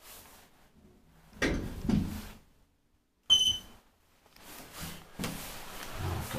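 Elevator car sliding doors moving on a Valmet Otis traction lift, with a short, sharp high beep a little over three seconds in that is the loudest sound.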